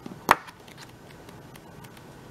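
Sheets of a thick scrapbook paper pad being flipped by hand: one sharp slap of paper just after the start, then faint light ticks and rustles of the pages.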